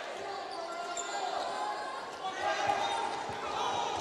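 Basketball arena ambience: a steady murmur of crowd voices in a large gym, with a basketball bouncing on the hardwood court during play.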